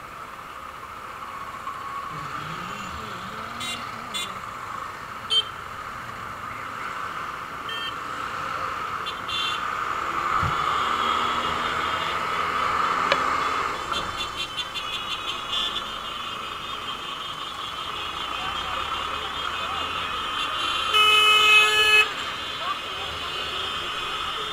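Congested street traffic heard from a motorcycle: engines running all around, with a vehicle horn sounding for about a second near the end, the loudest sound.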